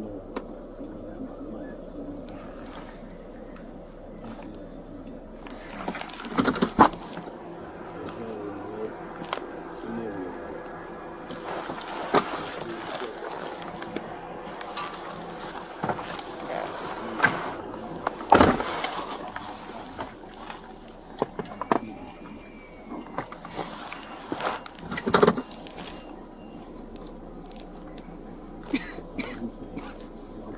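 Handling noise from a body-worn camera: rustling and scattered sharp knocks as it rubs against clothing and brushes the car's interior.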